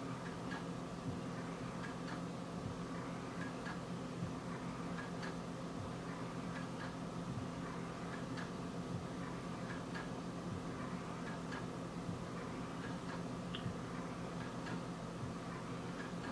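Quiet room tone: a steady low hum with faint, irregular ticks about once a second.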